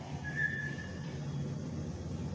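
Chalk squeaking on a chalkboard as a line is drawn: one thin, high squeal lasting under a second, over a low steady hum.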